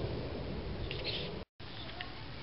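Steady outdoor background noise, low rumble with hiss, with a short high sound about a second in; the sound drops out for a moment at an edit.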